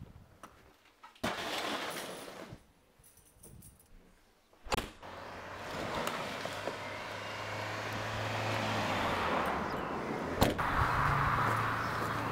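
Delivery van's rear cargo door being opened and a plastic crate handled: a rustling burst, then a sharp clack of the door latch just before five seconds in, followed by steady outdoor noise with a low hum and another sharp knock near the end.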